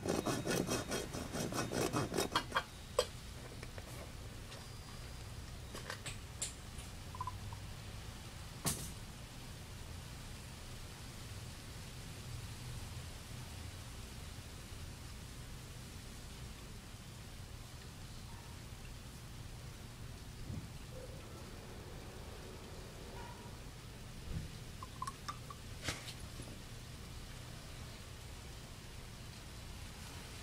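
A hand cutter working through a white PVC sprinkler riser: a rapid run of clicks for about two and a half seconds, ending in a sharp snap about three seconds in. After that only a faint background with a few scattered knocks.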